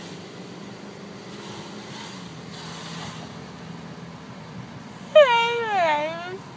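A young woman crying: about five seconds in she lets out a loud wail whose pitch bends and then slides down, over the low, steady hum of a car cabin. She is groggy from anesthesia after having her wisdom teeth pulled.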